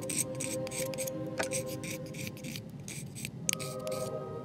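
Reed knife scraping the cane of a handmade oboe reed in a quick series of short strokes, taking the bark off the back of the scrape to lower the reed's pitch.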